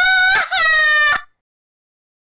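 A high-pitched, shrieking laugh in two long wavering bursts that cuts off abruptly a little over a second in, followed by dead silence.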